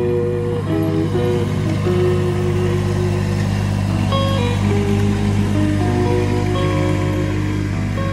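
Background music with a slow melody of held notes, over the steady running of a Kubota compact tractor's engine.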